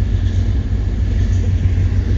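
1985 Maserati Quattroporte's 4.9-litre quad-cam V8 on four Weber carburettors idling with a steady low rumble, just out of storage.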